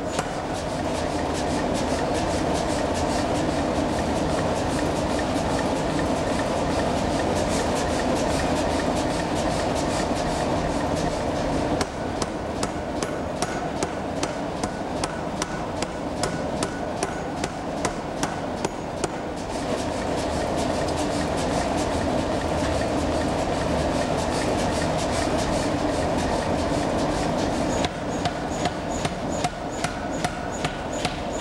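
Mechanical forging hammer pounding a red-hot knife blank on the anvil in a rapid, steady run of blows, while the blank is forged out to width with a flat iron set on it. The blows turn sharper and brighter for several seconds in the middle, over a steady drone of the machinery.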